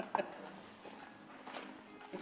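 Quiet room sound with low voices and a couple of light clicks of cutlery on plates, one at the start and one about a second and a half in.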